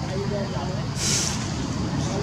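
A steady low rumble with faint, wavering voice-like sounds over it, and a short burst of hiss about a second in.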